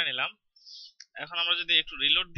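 A man speaking, with a pause about a second in that holds a brief hiss and a single computer mouse click.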